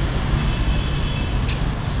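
Steady low rumble of city street traffic, with a faint thin high tone briefly about half a second in.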